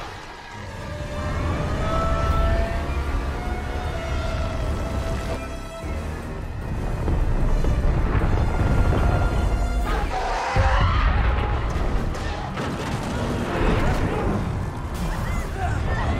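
Film soundtrack mix: orchestral score over deep, continuous rumbling booms. From about ten seconds in, the mix turns denser and noisier.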